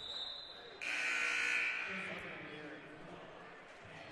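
Basketball scorer's-table horn sounding once for about a second, starting about a second in and fading out in the gym's echo: the signal for a substitution. A thin high tone comes just before it.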